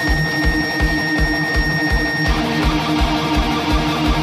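Live heavy metal band playing: distorted electric guitars and bass over a steady kick-drum beat of about three a second. A held high note drops out a little after halfway through.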